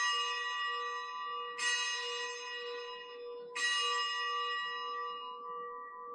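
Altar bell rung at the elevation of the host during the consecration of the Mass. It is struck three times, about two seconds apart, and each stroke rings on and fades slowly into the next.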